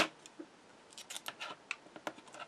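A sharp click at the start, then light scattered clicks and rustles of double-sided red liner tape and scissors being handled on a cutting mat.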